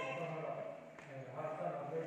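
Speech only: a man speaking into a pulpit microphone, with a short pause near the middle.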